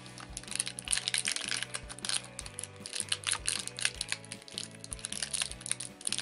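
Thin foil packet crinkling and crackling in rapid, irregular bursts as it is worked open by hand, over background music with a steady beat.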